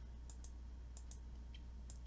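Computer mouse clicked three times, each click a quick pair of ticks (button press and release), faint over a low steady hum.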